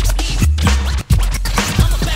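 Hip hop track with booming bass notes, drums and turntable scratching. The music drops out for a moment about a second in.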